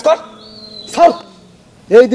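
A dog barks twice, about a second apart.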